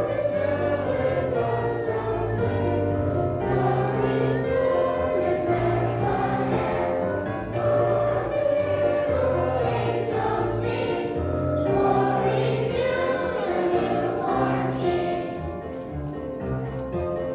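Children's choir singing with instrumental accompaniment holding steady low notes beneath the voices.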